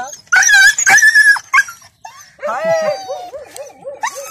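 A dog whining and yelping: three loud, high-pitched cries in the first second and a half, followed by lower, wavering whimpering.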